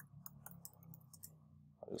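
Faint keystrokes on a computer keyboard: about ten light taps as a search query is typed and entered.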